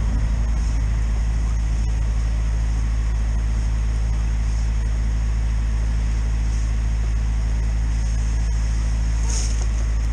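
Drain-jetting machine's engine and pump running at a steady low drone, with a brief high hiss about nine seconds in.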